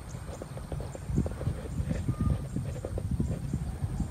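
Low rumble with irregular thumps on the microphone, growing louder about a second in. Faint, short, high bird chirps come through above it.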